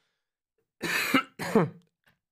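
A man coughing twice in quick succession, the second cough falling in pitch.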